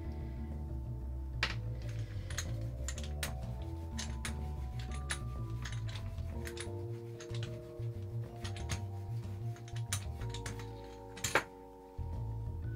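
Background music with a string of light, irregular clicks and taps: a rubber brayer rolled through paint on a gelli plate, with a paint tool working on its surface. A sharper knock comes near the end as the brayer is set down.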